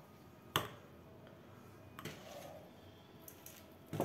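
Light handling sounds of a small shaker bottle and a plastic spoon over a stainless steel bowl of salt: a sharp click about half a second in, another about two seconds in, and a few softer ticks later.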